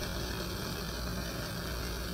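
Steady hiss with a low rumble from a lit Bunsen burner running with its air hole open, as a wire inoculating loop is flamed in it.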